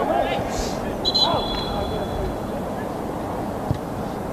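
Players shouting on a football pitch, then a referee's whistle blown once about a second in, a steady high tone lasting just over a second, over a low wash of outdoor noise.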